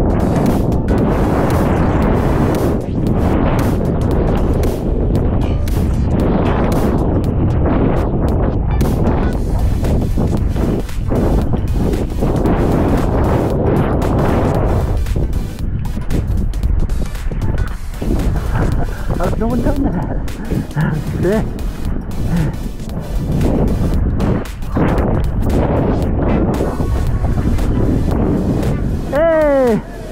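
A snowboard sliding and carving down through loose snow: a rough hiss that swells and fades every second or two, with wind on the microphone. Background music with singing plays along, clearer in the second half.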